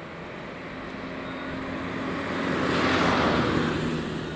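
A road vehicle driving past, its tyre and engine noise swelling to a peak about three seconds in and then fading, over a steady low engine hum.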